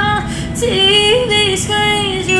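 A woman singing a slow melody, holding notes and moving between them in small runs, with a brief break for breath about a quarter of a second in.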